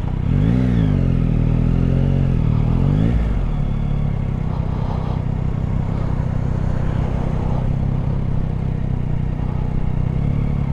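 Yamaha Tracer 9 GT's three-cylinder engine at low town speed: its note rises and falls a few times over the first three seconds, then settles to a steady low running note as the bike rolls along.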